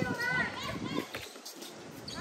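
Girls' voices calling out during an outdoor basketball game in the first half second, and a single sharp knock about a second in, such as the ball bouncing on the hard court.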